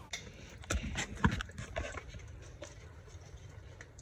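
A few sharp knocks and cracks, the loudest about a second in, then fainter ones, as someone crouches and works by hand among mangrove roots.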